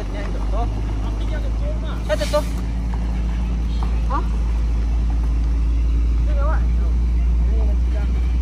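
Heavy trailer truck's diesel engine running at low revs as the loaded rig pulls slowly away, a steady low drone that grows a little louder.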